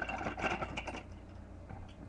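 Packaging of a toy building set rustling and crinkling as it is opened by hand: a dense run of crackles in the first second, then quieter, scattered handling clicks, over a steady low hum.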